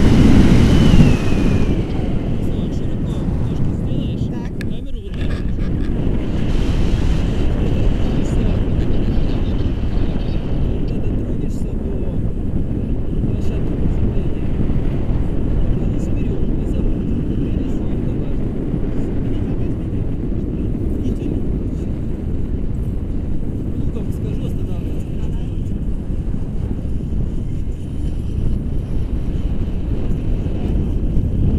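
Airflow buffeting a camera microphone in tandem paraglider flight: a steady low rumble, loudest in the first two seconds.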